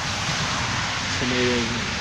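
A steady, even hiss of outdoor noise, with a short hum of a man's voice a little past halfway.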